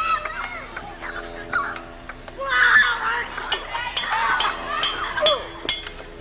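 Table-tennis rally: a ping-pong ball clicking sharply off paddles and a board table on sawhorses, several hits a second, over the voices of children and adults chattering nearby.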